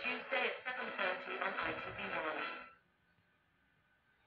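Audio of a recorded TV football promo played through a monitor's small speaker: voices mixed with music that cut off abruptly about two-thirds of the way in, followed by near silence.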